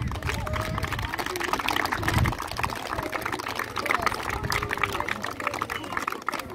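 A crowd applauding, many hands clapping together, with scattered voices underneath.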